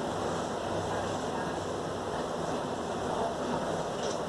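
Steady background hiss of room noise with no distinct sound standing out.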